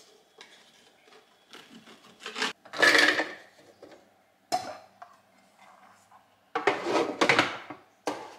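Bread knife sawing through bread on a wooden cutting board in short scraping strokes. Then the bread pieces are dropped into the plastic bowl of a Moulinex food processor, and the bowl and lid clatter and knock as they are handled.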